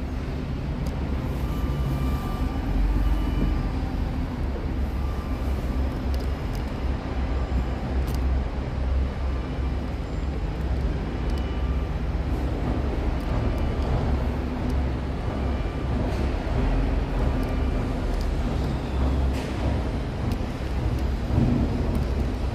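Steady low rumble of road traffic and construction machinery, with a few faint tones coming and going.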